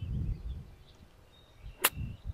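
A single sharp click of a golf club striking the ball on a short chip shot, near the end. Before it, in the first half second, a low rumble of wind on the microphone.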